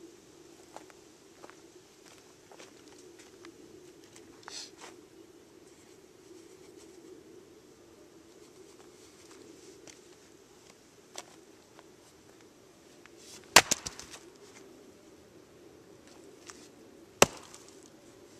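Restored single-bit axe on a curved wooden handle chopping into a log on a chopping block: two sharp blows about three and a half seconds apart, the first followed by a couple of quick clicks. The log splits.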